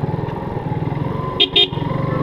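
Motorcycle engine running at low speed with a steady rhythmic low pulse. Two short horn beeps sound about a second and a half in.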